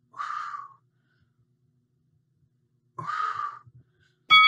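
A man exhaling hard twice, about three seconds apart, with the effort of leg lifts.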